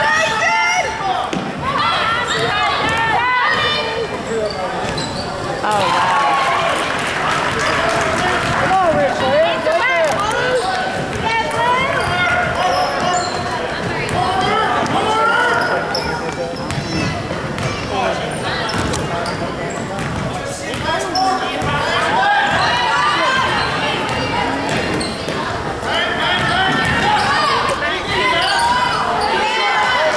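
Basketball game in a gym: a ball dribbling on the hardwood floor amid continuous voices of players and spectators calling out and talking, all echoing in the hall.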